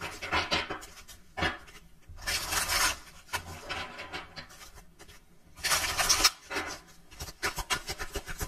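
A deck of cards being shuffled by hand: two rasping bursts a few seconds apart, with light clicks and taps of the cards in between.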